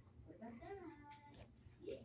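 Faint dog whine: a short pitched call that bends up and down, then holds a high note briefly about a second in.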